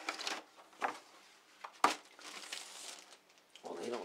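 Rustling and crinkling handling noises, with one sharp click a little under two seconds in; a voice starts just before the end.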